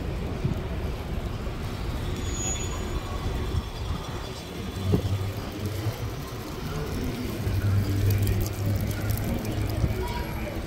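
Outdoor street ambience: a low rumble of traffic that grows louder in the last couple of seconds, with faint voices and a single sharp knock about halfway through.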